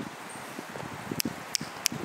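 Faint outdoor background noise with three light, sharp clicks in the second half.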